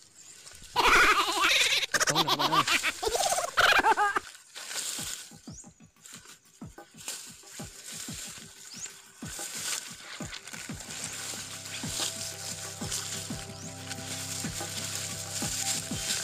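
A loud warbling call with wavering pitch for about three seconds. Then footsteps crackling through dry leaves and twigs in forest undergrowth. Steady background music comes in about ten seconds in.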